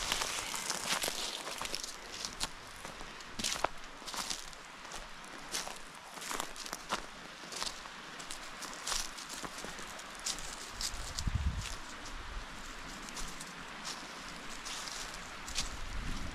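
Footsteps crunching through dry fallen leaves, an irregular run of crisp crackles and rustles, with a brief low rumble about eleven seconds in.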